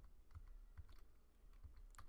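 Faint typing on a computer keyboard: a scattered run of soft key clicks as a command is entered.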